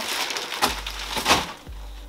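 A plastic bag of shoes rustling, with a couple of soft knocks as it is put down.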